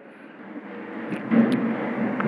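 Low background rumble that grows louder over the second half.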